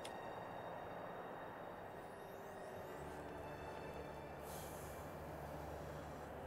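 Faint, tense film underscore: a low droning hum comes in about three seconds in, over a steady background hiss.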